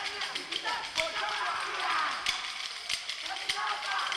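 Kolkali dancers' wooden sticks clacking together in sharp strikes, about once a second, over a group of voices singing the kolkali song.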